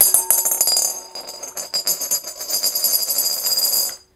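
A referee coin landing in a glass bowl and spinning and rattling against the glass, a fast metallic rattle with the bowl ringing in steady tones. It settles flat and the rattle stops abruptly near the end.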